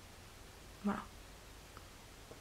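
Quiet room tone with a single short spoken word, "voilà", about a second in.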